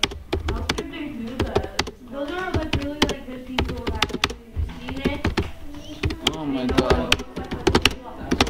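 Computer keyboard keys being typed in quick, uneven strokes at about 40 words a minute, a steady patter of clicks.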